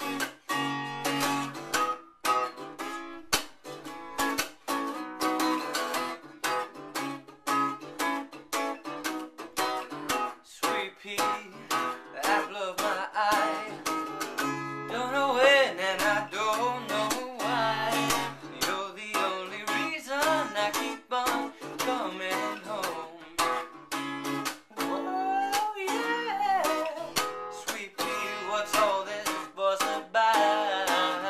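Acoustic guitar strummed in a steady rhythm as a solo song accompaniment. After a short instrumental opening, a man's singing voice comes in over the guitar and carries on.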